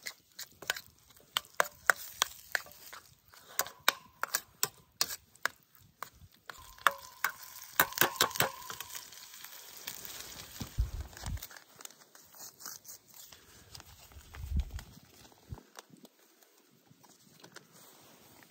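A metal spoon stirring and scraping ground beef in a stainless steel skillet over a campfire, with quick clicks and taps of spoon on pan and a brief metallic ring, over a light sizzle. About halfway through the stirring stops, leaving the faint sizzle and a couple of dull thumps.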